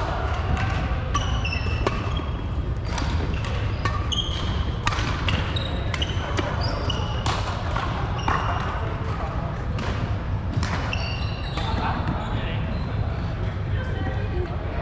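Badminton racquets hitting shuttlecocks in several overlapping rallies, sharp cracks every second or so, with short high squeaks of court shoes on the wooden floor over a steady low rumble of the hall.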